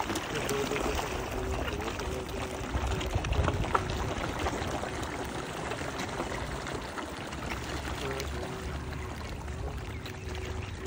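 A crowd of carp and koi feeding at the water's surface, splashing and slurping in a busy, continuous churn of small splashes.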